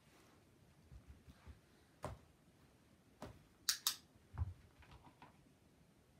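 Scattered light clicks and soft knocks as the dog moves about and sniffs near the dish on the rug, the loudest a sharp double click a little under four seconds in.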